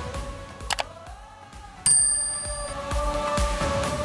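Upbeat outro music that dips briefly after a short click, then a bright bell-like ding about two seconds in, the sound effect of a subscribe button and its notification bell, ringing out and fading as the music returns.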